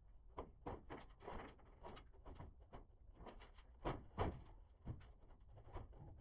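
Irregular light clicks and knocks from a cable-fishing rod and cable tapping and scraping against the metal framing of a suspended ceiling as they are pushed through, with two louder knocks about four seconds in.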